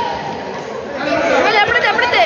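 Several people's voices chattering and calling out over a steady background of hall noise, with voices rising about halfway through.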